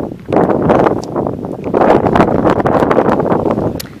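Wind buffeting the camera microphone: a loud, uneven rushing.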